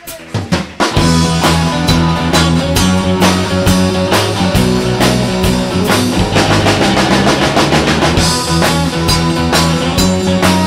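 Live rock and roll band playing an instrumental intro: a few separate drum hits, then the full band comes in about a second in, with drum kit, electric guitar and bass driving a steady beat.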